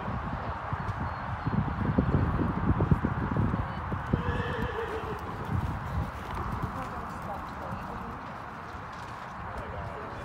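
Hoofbeats of a horse cantering on a sand arena footing, loudest about two to three seconds in.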